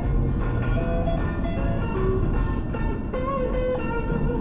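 Music with guitar playing on the car radio, heard inside the cabin over steady low road noise.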